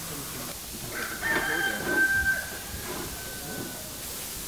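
A rooster crowing once: a drawn-out call that starts about a second in and trails off fainter near the end.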